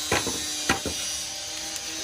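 A few short, sharp clicks and knocks in the first second, with a faint steady hum underneath.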